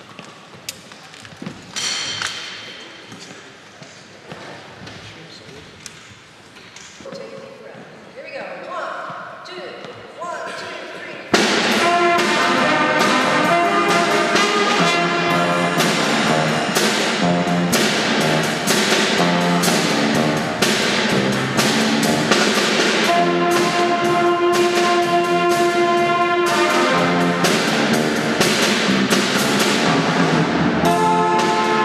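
A few knocks and a short rising run of notes, then about eleven seconds in a school jazz band starts playing loudly: saxophones over electric bass, keyboard and a drum kit keeping a steady beat.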